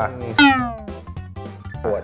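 A single loud meow, sliding down steeply in pitch, about half a second in, over background music.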